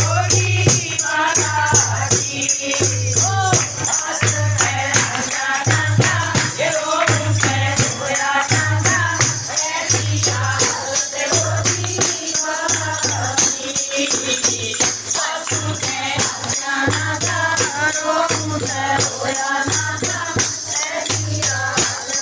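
Haryanvi devotional bhajan sung by a group of voices, accompanied by a dholak beating a steady deep rhythm and a tambourine's jingles shaken continuously.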